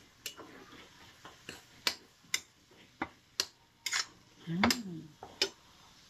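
Metal spatula clinking against a stainless steel wok as stir-fried eggplant is turned: about nine sharp, irregular clinks.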